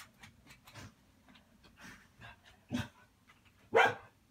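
A dog barking a few short times, the loudest bark near the end, with faint light clicks in between.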